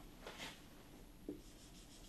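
Faint strokes of a marker pen on a whiteboard: a few short back-and-forth strokes starting about one and a half seconds in.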